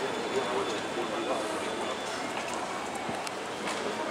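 Street ambience of a busy pedestrian street: passers-by's voices over a steady background of city noise, with a few faint clicks.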